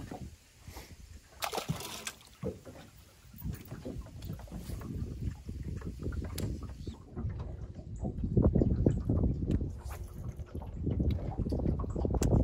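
Water sloshing against a small aluminum boat's hull, with an uneven low rumble that grows louder from about eight seconds in.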